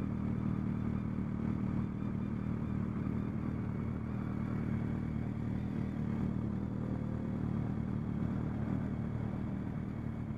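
Motorcycle engine running steadily at cruising speed with wind and road noise, heard from on board the bike.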